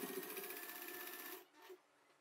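Electric domestic sewing machine stitching, faint and steady, stopping about one and a half seconds in.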